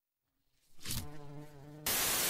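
A cartoon bee's steady low buzz, starting about two-thirds of a second in, cut off near the end by a louder burst of TV static hiss.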